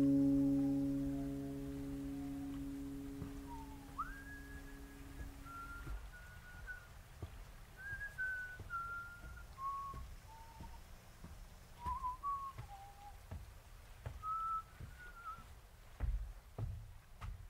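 A held acoustic guitar chord fades out over the first few seconds, then a person whistles a slow, quiet melody of short notes with small slides between them.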